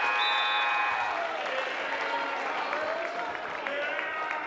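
Gym scoreboard horn sounding once for about a second, a steady buzzing tone, over crowd applause and voices in the bleachers.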